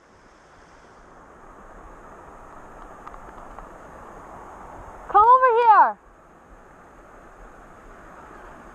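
Steady noise of a stream and a small waterfall pouring into a pool. About five seconds in, a high-pitched voice gives one loud shout lasting under a second.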